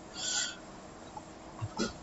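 A short breath near the microphone, a soft breathy rush lasting under half a second, followed near the end by a faint low knock and the start of a mouth sound.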